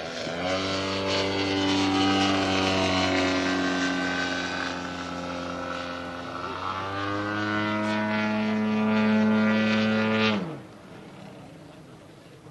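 Radio-controlled aerobatic model airplane's engine and propeller running at high power in flight, a steady note with a brief dip about halfway through. About ten seconds in the note falls and cuts off suddenly.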